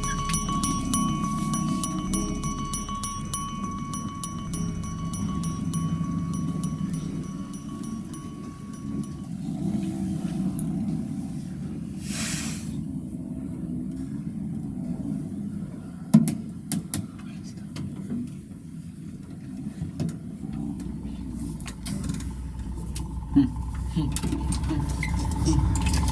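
Soft background music with low, quiet voices beneath it, with no clear words. A short hiss comes about twelve seconds in, and a few sharp clicks around sixteen seconds.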